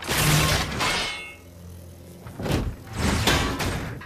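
Animated robot weapon-deploy sound effects: a loud mechanical clank and whoosh at the start that fades out over about a second, then a second run of clanks about two and a half seconds in, as a weapon unfolds and charges with an energy glow.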